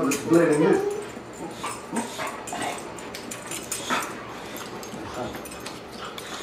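Two boxer dogs, a puppy and an adult, play-wrestling, with short dog vocal sounds and scattered sharp clicks and scuffles from their play.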